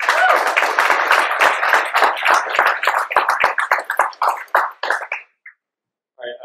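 Audience applauding: a burst of clapping that starts at once and thins out, dying away about five seconds in.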